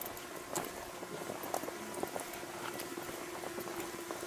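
Footsteps of a large group walking on a stony dirt path: many overlapping scattered crunches and taps. A faint steady tone enters about halfway through.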